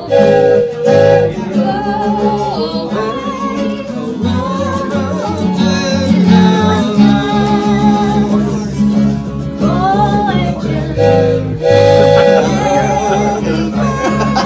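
Acoustic guitar strummed over an electric bass line, with a woman's voice carrying the melody into a microphone.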